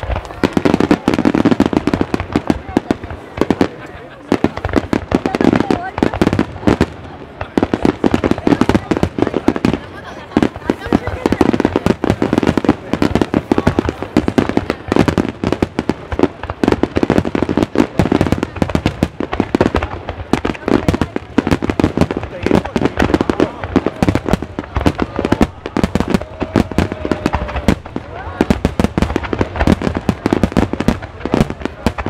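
A dense barrage of aerial firework shells bursting in rapid, overlapping succession: a continuous run of bangs and crackles with no pause.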